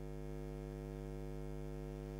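Steady electrical mains hum with a buzzing stack of overtones in the audio feed, holding level and pitch without change.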